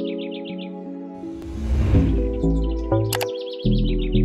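Intro jingle music of held synth notes with birdsong-like chirping trills; a bass line comes in about a second in, under a whoosh that rises and falls. A single sharp click about three seconds in is a button-click sound effect.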